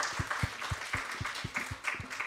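Audience applauding, a dense patter of many hands clapping, with a regular low thudding at about four beats a second.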